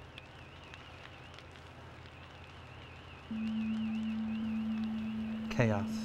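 Fire radio audio: a faint warbling high tone, joined about three seconds in by a louder steady low tone, with a brief voice-like burst near the end.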